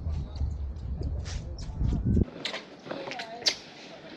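Wind buffeting the microphone, a loud low rumble that cuts off abruptly a little past halfway. After it comes quieter outdoor sound with faint voices and a few light clicks.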